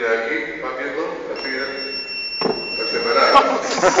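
A steady, high electronic beep from an optical fiber fusion splicer, held for about two seconds and starting a little over a second in, heard over people talking.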